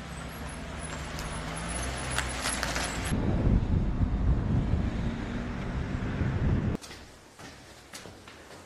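A motor vehicle's engine runs with a steady low hum, giving way about three seconds in to a louder, uneven low rumble. Near the end it cuts off abruptly to a quiet stairwell with soft footsteps on concrete steps.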